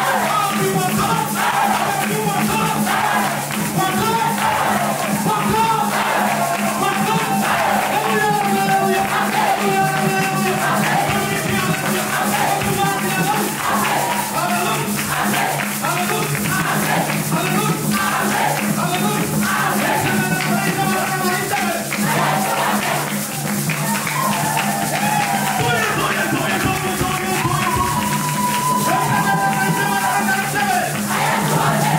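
Lively church worship music: a group of voices singing over a steady percussion beat and a sustained low instrumental note.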